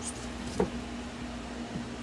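Steady background fan hum with a low constant tone, and one brief knock about half a second in as the display and its cable are handled.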